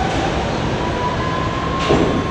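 A New York City subway B train pulling into an underground station and slowing to a stop: a steady rumble from the cars with a thin high tone over it, and a short burst of noise near the end.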